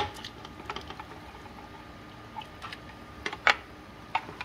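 Plastic ladle scraping and knocking inside a glass jar while canned trout is scooped out into the soup pot: a string of irregular light clicks, a sharp one at the start and the loudest about three and a half seconds in.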